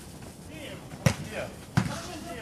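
A football kicked twice: two sharp thumps, the louder about a second in and another near the end, with players' shouts around them.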